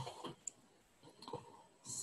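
Quiet room with a single faint, sharp click about half a second in and a few fainter small ticks later on.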